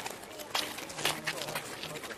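Murmured men's voices, with a couple of short sharp sounds about half a second and one second in.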